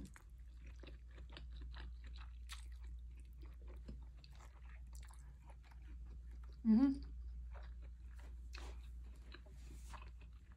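A person chewing a mouthful of spaghetti, a run of small wet clicks and smacks, with a brief "mm-hmm" about two-thirds of the way through. A low steady hum sits underneath.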